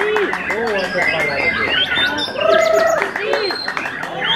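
White-rumped shamas singing: a rapid run of arched, gliding whistles at several pitches at once, with a buzzy trill about two and a half seconds in.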